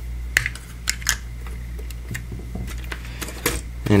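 Irregular light clicks and taps of plastic Lego bricks as a minifigure is pressed into a Lego model and the model is handled.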